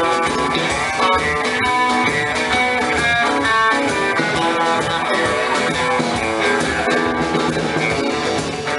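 Live band playing an instrumental passage with no singing: electric and acoustic guitars over upright double bass and a drum kit.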